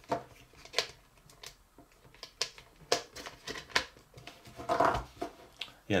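Hard plastic Potato Head toy pieces being handled and pressed together: a scatter of light clicks and taps as the parts are worked into their peg holes.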